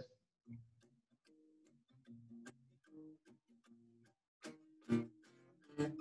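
Guitar played softly: quiet picked notes with light ticking clicks, two or three a second, a couple of louder ones near the end.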